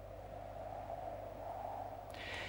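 A faint, steady drone whose pitch wavers slowly, over a low electrical hum.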